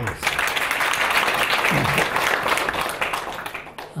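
Audience applauding: many hands clapping in a steady patter that dies away just before the end.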